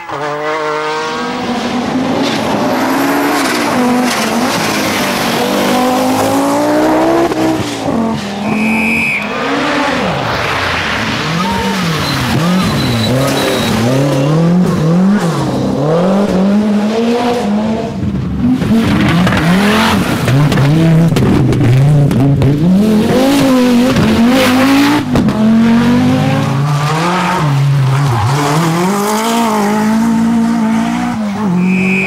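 Group B rally cars at full throttle on special stages, one after another. Their engines rev hard and drop back again and again through gear changes and corners. A brief high tone sounds about nine seconds in.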